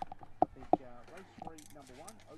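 Faint background talking with no clear words, with two sharp clicks a third of a second apart in the first second.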